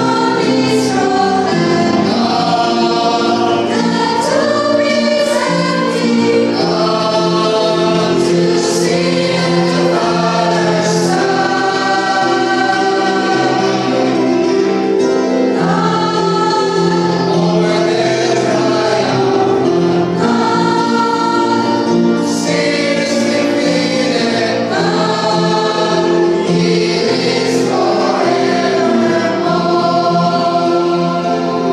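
Mixed church choir of men's and women's voices singing a hymn together, in slow held chords.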